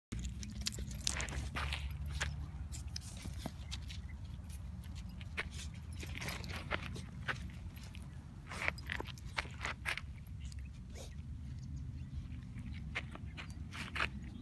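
Scattered scratching and crunching on dry, gravelly dirt as a two-month-old Vizsla puppy digs and noses at the trail, over a steady low rumble.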